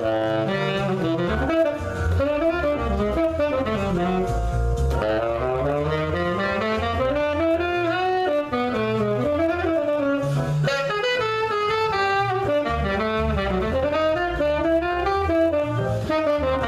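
Saxophone playing a continuous melodic line, phrases running up and down in pitch, with one brief break for breath about eight and a half seconds in.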